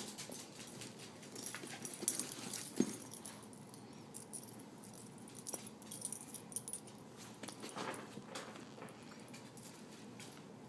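Small dog playing with a plush toy around a fabric pet travel bag: faint rustling, scuffing and scattered light clicks, with one short louder sound about three seconds in.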